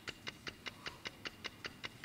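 Quiz countdown clock sound effect: a quiet, even ticking at about five ticks a second, timing the contestants' answer.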